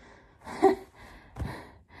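A woman gasping and breathing hard, catching her breath after holding a plank for over four minutes. There are two heavy breaths, the first, about half a second in, with a short laugh.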